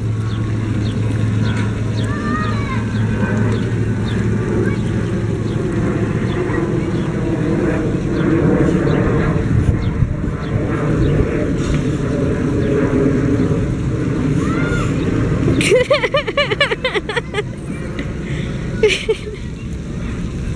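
Steady rushing outdoor noise with a low rumble, broken by a few short voice sounds; the clearest burst comes about sixteen seconds in.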